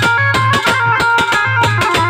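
Live folk dance music: a harmonium holding steady reed chords over a fast, even beat on a dholak hand drum, its deep bass head sounding about twice a second.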